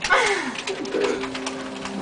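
A person's voice: a long falling squeal at the start, then a short warble about a second in, with a steady low hum behind.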